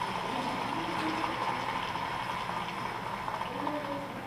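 Audience applause in a hall, many hands clapping in a steady, dense patter.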